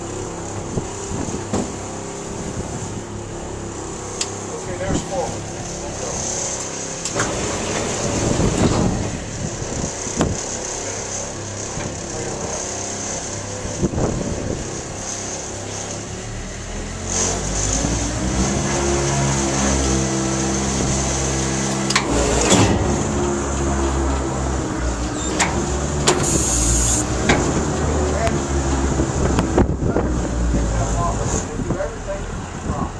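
Wind and handling noise with scattered clicks. Then, about halfway through, a motor on the boat's conveyor system starts and runs with a steady low hum, with a short hiss near the end.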